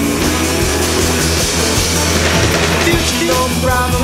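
Rock band playing an instrumental stretch with no singing, over a steady bass line; held notes come in near the end.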